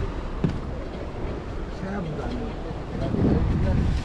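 Faint, indistinct voices over a steady low rumble, with one sharp click about half a second in.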